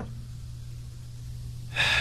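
A pause in the talk with a steady low hum underneath, then a man drawing a quick, sharp breath near the end, just before speaking.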